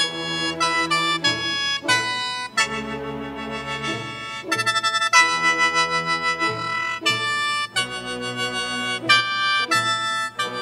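Symphony orchestra and guzheng playing together, mostly in held chords that change every second or so.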